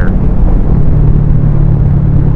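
Motorcycle engine running at a steady cruising speed, heard from the rider's helmet with wind rushing over the microphone.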